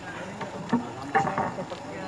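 Acoustic guitars of a Tausug dayunday group plucked sparsely: a few single notes and short ringing phrases, with voices faintly underneath.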